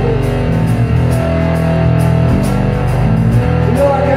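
Electric guitar and electric bass playing an instrumental rock passage, with held notes over a steady high tick about three times a second.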